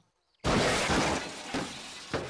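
A dustbin of rubbish tipped into a bin lorry, as a cartoon sound effect: after a brief silence, a sudden loud crash about half a second in that fades away over the next second into a lower rattle.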